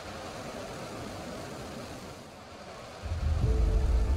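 Rocket launch noise, a steady rushing roar of the engines at lift-off. About three seconds in, a much louder deep bass rumble comes in and musical tones start over it.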